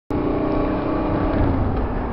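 Honda Africa Twin motorcycle riding along, its engine running steadily under road and wind noise, the engine note easing off slightly near the end.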